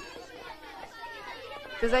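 Children's voices chattering in the background, several at once and fairly faint. Near the end a boy's voice starts speaking loudly.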